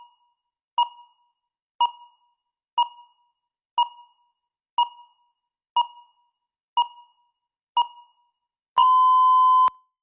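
Countdown timer beeping once a second: eight short, identical beeps, then one long steady beep of about a second near the end, marking that the speaking time has run out.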